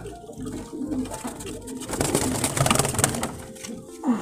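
Domestic pigeons cooing in a loft, with a louder flurry of rustling from about two to three seconds in.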